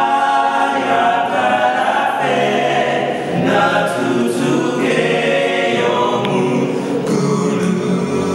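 Unaccompanied a cappella vocal group singing a gospel song: several voices holding sustained chords in harmony, moving from chord to chord every second or so.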